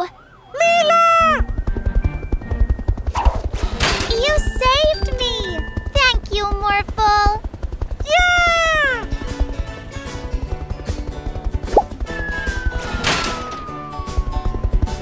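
Cartoon soundtrack: upbeat background music with a steady beat, short wordless character exclamations, and near the end one long falling whistle-like sound effect.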